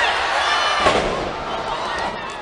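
A wrestler's body slammed onto the wrestling ring canvas: one sharp bang about a second in, over an arena crowd cheering and shouting.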